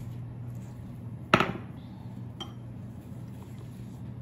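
A single sharp clink of a hard utensil or dish about a second in, with a brief ring, then a fainter tick about a second later, over a steady low hum.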